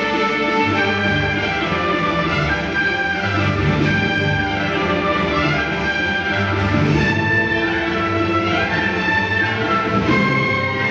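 Symphony orchestra playing: bowed strings with flute, clarinet and trumpet. A melodic figure rises and falls over and over, above sustained low notes.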